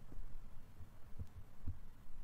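Faint low thumps and rumble from handling of the recording device, with a few soft knocks: one near the start, one about a second in and one shortly before the end.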